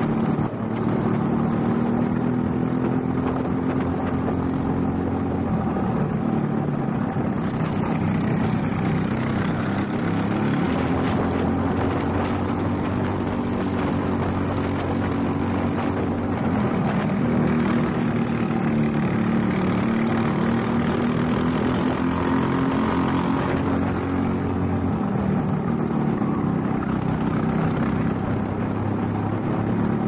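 Briggs & Stratton LO206 four-stroke single-cylinder kart engine running at racing speed, heard onboard, its pitch rising and falling several times as the throttle changes.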